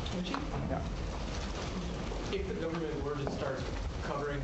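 Faint speech in a room, a voice well away from the microphone: a question being put to the speaker from the floor.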